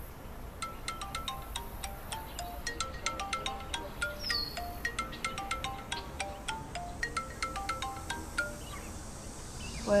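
Mobile phone ringing with a melodic ringtone: a quick tune of short, bright, chime-like struck notes, about four a second, which stops shortly before the call is answered.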